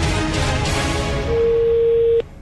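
Radio show jingle music winding down, ending on a single steady held tone through the second half.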